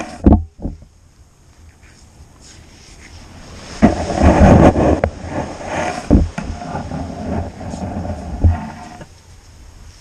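Long-handled beach sand scoop digging in wet sand: a few thumps as it is driven in, and a longer stretch of rushing, scraping sand about four seconds in.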